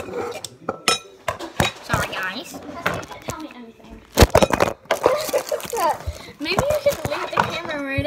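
A metal potato masher and spoon knocking and clinking against a glass mixing bowl as water beads are mashed, with many sharp clicks, mixed with children's voices and laughter.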